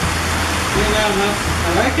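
Steady, loud rushing noise with a low hum underneath, like a running fan or blower. A few murmured words are heard about a second in and again near the end.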